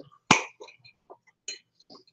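A single short cough about a quarter second in, followed by a few faint light clicks.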